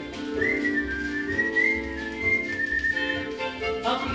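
A 78 rpm record plays an instrumental passage of a 1950s Italian pop song: a single high whistled melody line, gliding and wavering slightly, over sustained orchestral chords.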